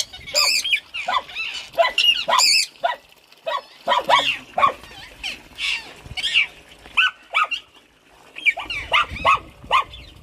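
Caged pet parrots calling: a busy run of short chirps and whistled calls, with two harsh, piercing squawks in the first three seconds.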